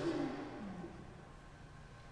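A man's voice trailing off at the end of a word and fading into the hall's reverberation, then quiet room tone for about a second.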